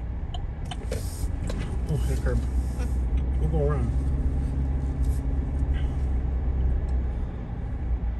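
Car engine and road noise heard from inside the cabin while driving: a steady low rumble that strengthens about a second in and eases near the end, with faint voices.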